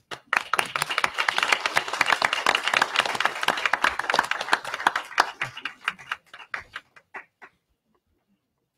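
A small group applauding in a small room: dense clapping that thins out to a few scattered last claps and stops about seven and a half seconds in.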